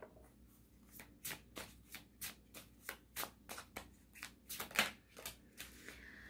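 A deck of tarot cards being shuffled by hand: a quiet run of short slaps and clicks, about two or three a second, starting about a second in.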